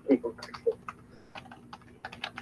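Computer keyboard typing: a run of irregular key clicks, several a second.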